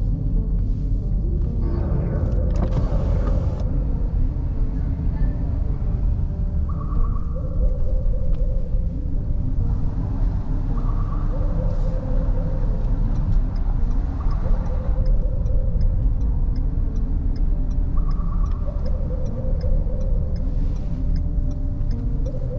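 Road and engine rumble inside a moving car's cabin, with music playing from the car stereo. A brief rush of noise about three seconds in.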